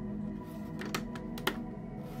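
Plastic Lego bricks clicking as they are handled and pressed together: four sharp clicks in the second half, the last the loudest, over background music with steady tones.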